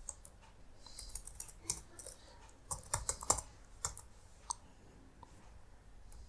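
Typing on a computer keyboard: a scattered handful of keystrokes at an uneven pace, fairly faint.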